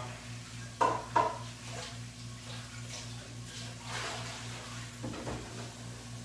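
A bowl and other kitchenware being handled, with two sharp clinks close together about a second in, then fainter scraping and knocking. A steady low hum runs underneath.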